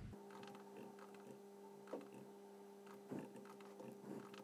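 Near silence: a faint steady electrical hum, with two faint computer-keyboard key clicks about two and three seconds in.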